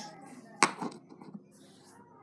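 Toy building blocks knocking against each other and the wooden floor as a block is set down: one sharp clack about half a second in, then a couple of lighter knocks.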